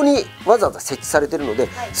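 A man's speech with background music underneath.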